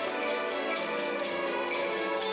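School string orchestra playing: violins and other bowed strings holding and changing sustained chords over a steady rhythmic pulse.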